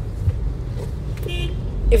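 A steady low background rumble, with a brief faint pitched sound a little past the middle.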